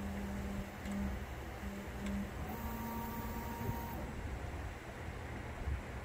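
Prusa XL 3D printer's stepper motors whining as the print head makes a series of short moves: a low hum that starts and stops several times, then holds for about a second and a half while a higher tone sounds above it, over a steady background hum.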